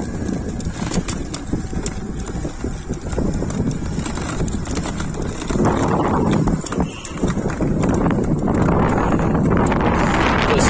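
Wind buffeting the microphone of a phone carried on a moving e-bike, with a run of small rattles and knocks from the bike and its mount over the road. It grows louder about halfway in.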